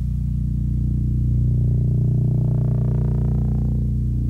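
Deep, steady engine rumble of a heavy vehicle, with a higher whine climbing in pitch through the second half and cutting off just before the end.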